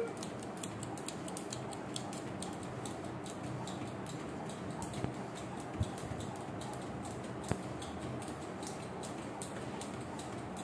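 Thin speed jump rope ticking against the floor in a quick, even rhythm as it is turned for fast speed skipping, with a couple of louder knocks around the middle.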